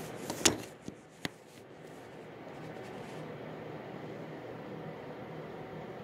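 A few knocks and clicks in the first second or so, the loudest about half a second in, as the handheld phone is moved about, then a steady low background hum.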